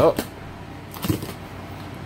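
Cardboard box flaps being pulled open by hand: a short rustle and scrape of the cardboard about a second in.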